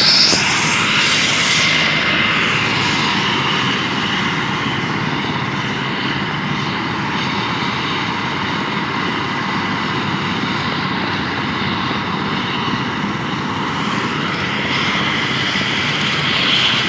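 Helicopter running on the ground: a steady, loud turbine whine over the rotor noise.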